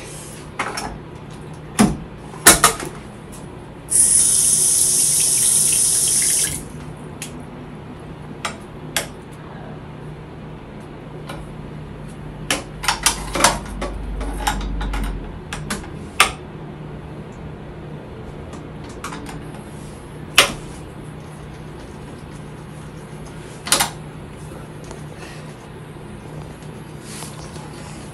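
A bathroom sink tap runs for about two and a half seconds, starting about four seconds in. Scattered clicks and knocks come from toothbrushes and a wall-mounted toothpaste dispenser, over a steady low hum.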